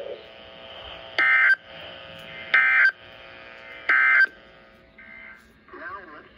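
Emergency Alert System end-of-message data tones played through a Motorola handheld radio's speaker, closing a NOAA Weather Radio severe thunderstorm warning. There are three short, loud, harsh digital bursts about 1.4 seconds apart, with faint radio hiss and hum between them.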